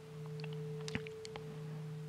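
The lingering ring of a meditation gong as it dies out: two steady pure tones, one low and one higher, with a few faint ticks.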